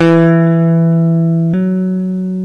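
Electric guitar playing one picked, sustained single note that steps up to a slightly higher note about one and a half seconds in, without being picked again.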